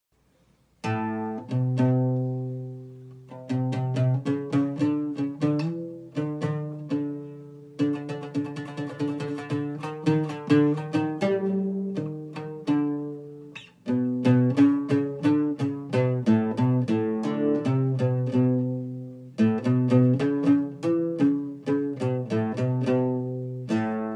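Oud played solo: runs of plucked notes starting about a second in, grouped into phrases, each ending on a note left to ring out before the next phrase begins.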